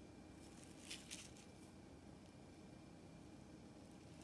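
Near silence: room tone, with a couple of faint, brief scratchy sounds about a second in.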